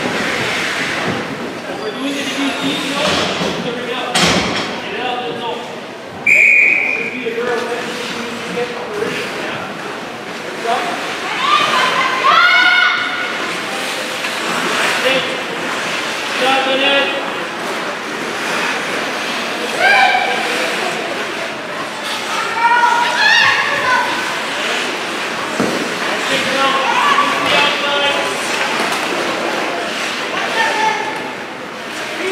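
Ice hockey game heard from the stands of an echoing arena: spectators' voices and shouts over steady hall noise, with a sharp knock about four seconds in and a short shrill tone about six seconds in.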